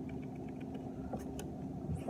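Duckett Ghost baitcasting reel being cranked slowly, faint quick ticking from the reel, over a steady low rumble with a constant hum; a couple of sharp clicks a little past a second in.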